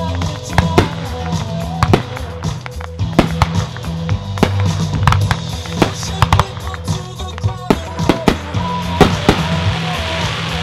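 Fireworks going off in sharp, irregular bangs and pops, sometimes several a second, over music with sustained tones.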